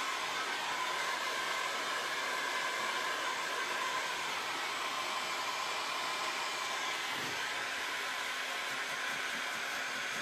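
Handheld electric dryer blowing steadily with a faint whine, drying freshly applied chalk mineral paint.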